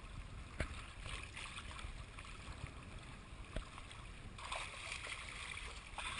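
Choppy bay water lapping and slapping against a surfboard right by the camera, with a couple of sharp slaps; the splashing grows louder about four and a half seconds in.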